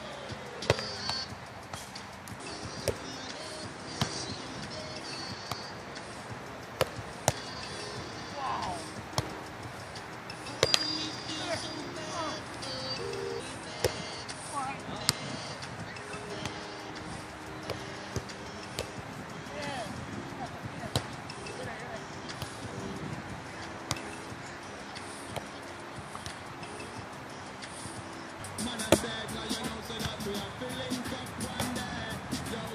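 A volleyball being played outdoors: a dozen or so sharp slaps as hands and forearms strike the ball, spread through the rally, the loudest near the end. Music plays in the background, with faint voices.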